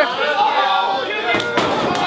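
Background crowd noise in a hall, with a sharp impact about one and a half seconds in: a pro wrestler taking a clothesline and slamming down onto the mat.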